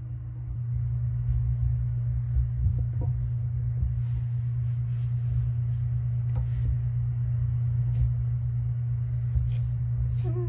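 Palms rolling modeling clay back and forth on a paper-covered tabletop, heard as an uneven low rumble over a steady low hum, with a few faint clicks.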